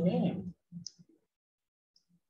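A man speaking for about half a second, then two brief murmured vocal sounds and a short click, then silence.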